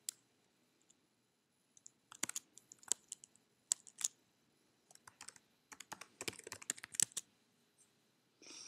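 Computer keyboard keystrokes: scattered single key clicks, then a quicker run of typing near the end as a short terminal command is entered.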